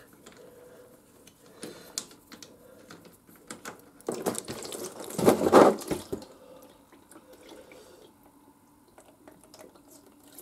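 Small clicks as an oil drain plug is unscrewed by hand, then about four seconds in a louder two-second rush of warm engine oil pouring into a drain pan, falling away to a quiet trickle. The warm oil runs thin, "like water".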